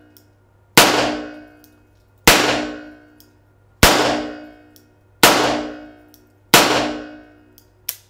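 Five shots from an Enfield revolver fired double action, about one and a half seconds apart. Each shot rings on and dies away over about a second in the reverberant indoor range.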